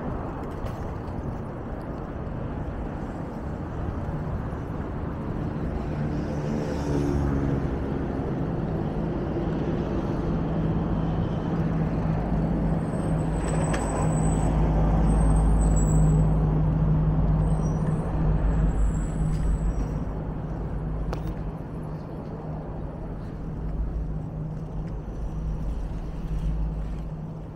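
Road traffic: a heavy vehicle's engine running with a steady low hum over the general traffic noise, and brief high-pitched brake squeals about halfway through.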